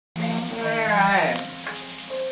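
Bacon and vegetables frying in a skillet, a steady sizzle, with a short pitched sound like a voice over it about a second in.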